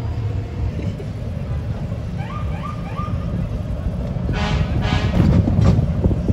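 Low rumble of slow-moving pickup trucks in a parade, with a few brief voices in the middle and two short loud bursts of sound about four and a half and five seconds in.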